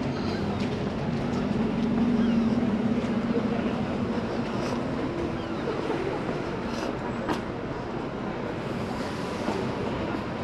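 Town street ambience with the steady low hum of a nearby vehicle engine, strongest in the first few seconds and then fading. There are a few faint clicks later on.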